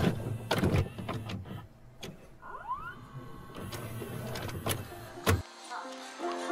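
Video cassette player sound effect: a run of mechanical clicks and clunks, with a short rising motor whine about two and a half seconds in. A sharp click comes just before music with plucked notes begins near the end.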